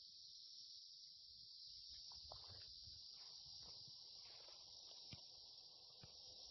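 Faint, steady high-pitched chirring of crickets. From about two seconds in, soft rustling and knocks join it, with one sharp click about five seconds in.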